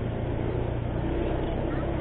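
Motor scooter engine running steadily while riding, a low steady hum under a constant rush of wind and road noise.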